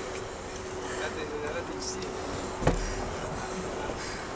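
Ice rink arena ambience: low, indistinct voices over a steady hum. One sharp knock comes about two-thirds of the way through.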